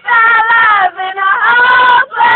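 A high voice singing loud, long held notes, breaking off briefly about a second in before the next note slides up and is held.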